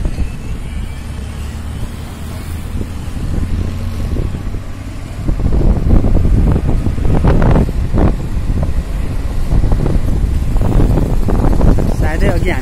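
Motorcycle ride through city traffic: a steady low rumble of engine and road noise, with wind buffeting the microphone. It gets louder about halfway through.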